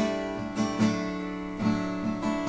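Steel-string acoustic guitar strummed, a few chord strokes about half a second apart, each ringing on into the next.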